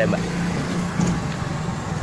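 Steady low hum of an idling motor-vehicle engine, with a wash of traffic-like noise underneath.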